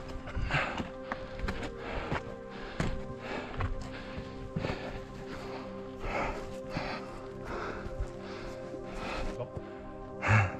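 Background music with long held tones, over the crunch of hiking boots stepping on rock and grass, a step about every half second to second.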